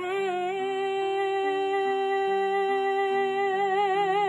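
A woman's singing voice holding one long sustained note, steady at first, with vibrato coming in near the end. Beneath it a backing accompaniment moves through lower notes.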